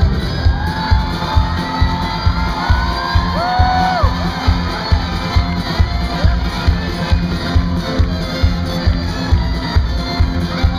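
Live band playing acoustic guitar, bass and drums on a steady beat of about two hits a second, with the crowd shouting and whooping along.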